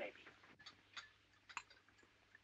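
Near silence, with a few faint, scattered clicks.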